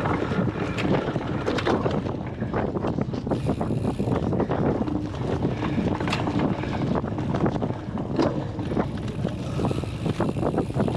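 Wind buffeting the microphone of a bike-mounted action camera at race speed, over the steady noise of knobby cyclocross tyres rolling over bumpy grass and mud, with the bike rattling and clicking over the bumps throughout.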